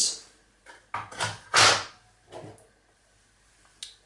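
Plastic alarm detector housings handled on a tabletop: a few short knocks and scrapes, the longest and loudest about a second and a half in, and a small click just before the end.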